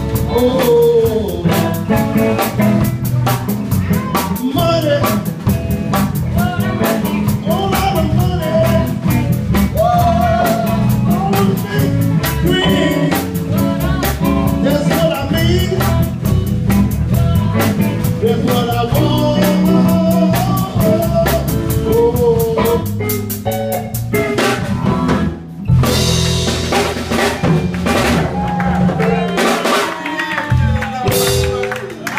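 Live blues band playing an instrumental stretch: drum kit keeping a busy beat under an electric guitar lead with bent notes. About 25 s in the band stops briefly, then closes with a few crashing cymbal hits.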